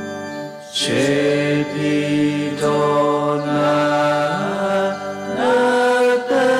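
Sung chant-like prayer in slow, long held notes that step in pitch, with short breaks for breath a little under a second in and again near the end.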